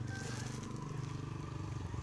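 A motor vehicle's engine running steadily, a low even hum.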